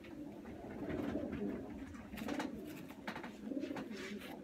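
Pigeons cooing continuously in a loft, with a few brief rustling noises about halfway through and again near the end as a racing pigeon's feathers are handled.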